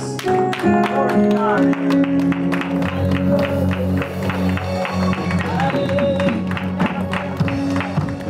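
Live church praise music: held chords over a steady beat, with a chord change about one and a half seconds in.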